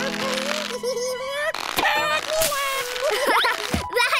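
Cartoon soundtrack: background music under a cartoon character's wordless, wavering vocalizing, with a few short sound-effect hits about two seconds in and rising pitch glides near the end.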